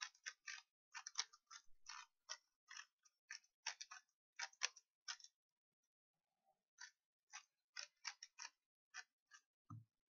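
A stickerless 3x3 speed cube being scrambled by hand: its plastic layers click with each turn, a couple of turns a second, with a short pause in the middle. Near the end there is a soft thump as the cube is set down.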